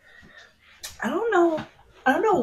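A short click, then about a second in a drawn-out voice that rises and then falls in pitch.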